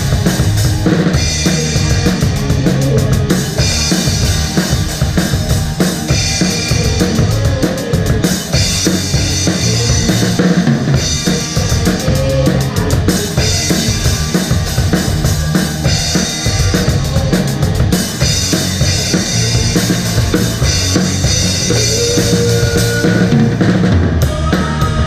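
Live rock band playing, with the drum kit close-up and loudest: snare, bass drum and cymbals in a steady rock beat over electric guitars and bass guitar.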